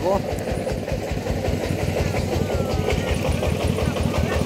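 Single-cylinder diesel engine of a công nông (Vietnamese two-wheel-tractor farm truck) idling, a steady rapid chugging beat.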